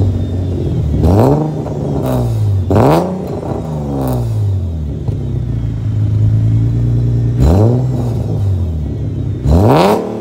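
2008 Infiniti G37S's VQ37VHR V6 through long-tube headers and a custom 3-inch single-exit exhaust with a new quieter muffler, revved in quick blips about four times, each rising sharply and falling back, with the revs held steady for a couple of seconds in the middle.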